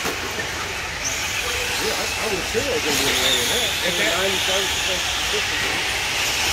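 A pack of 1/10-scale short course RC trucks racing on a dirt track, making a steady hiss with pitches that waver up and down.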